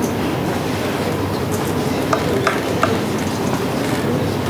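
Whiteboard eraser rubbed across a whiteboard, giving three short squeaks about two seconds in, over a steady background rumble.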